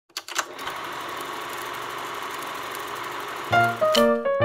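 Film projector running: a few clicks, then a fast, steady mechanical clatter. Piano music comes in about half a second before the end.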